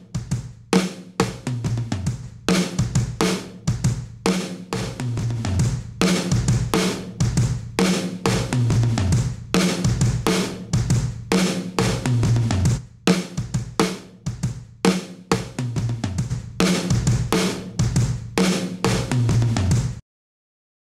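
Room-mic recording of a drum kit playing a steady kick-and-snare beat. It is first heard dry, then squashed hard by the SSL LMC+ Listen Mic Compressor plugin, emulating the SSL console's talkback compressor. Once the plugin is on, the gaps between hits fill in and the level stays up.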